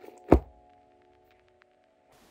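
A single dull thunk about a third of a second in from handling a paperback manga volume as it is closed and pressed to the chest, over soft background music that fades out.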